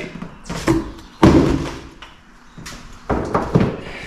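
A few thuds and knocks, the loudest about a second in, from a cardboard box and a heavy wall-mount EV charger with its coiled cable being handled and set down.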